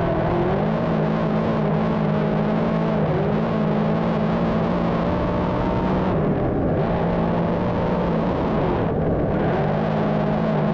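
On-board sound of a big-block dirt modified's engine running at part throttle, its note stepping down and back up a few times as the driver eases off and gets back on the throttle.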